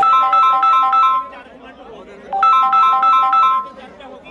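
A mobile phone ringtone: a short electronic melody of quick beeping notes, played twice with a pause of about a second between, over faint voices in the background.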